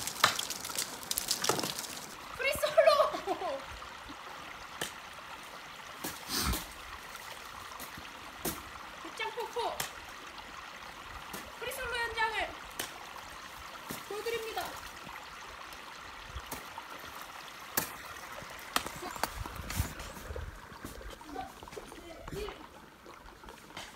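Meltwater trickling under partly melting ice on a frozen waterfall, with a few sharp strikes of crampons and ice axe into the soft ice and some brief vocal sounds.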